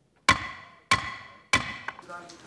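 Wooden gavel struck three times on its block, about two-thirds of a second apart, each knock ringing briefly. The three strikes formally seal the declared result of a parliamentary vote.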